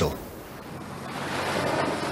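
Ocean surf and wind, a rushing sound that grows gradually louder.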